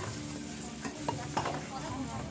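Water poured from bowls splashing over a seated person and onto the ground, with a couple of sharp knocks a little past the middle.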